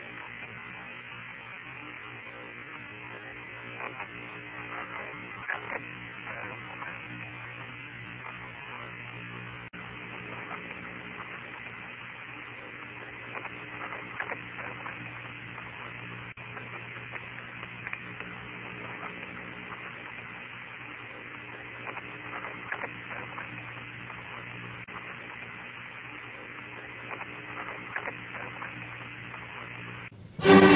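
Open Apollo 16 air-to-ground radio channel with nobody talking: steady radio hiss over a low hum, with faint crackles now and then.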